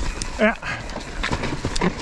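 Mountain bike descending a forest trail, heard from a handlebar camera: tyre and frame rattle with wind noise, a short shouted call about half a second in, then quieter riding with a few sharp knocks and another short vocal sound near the end.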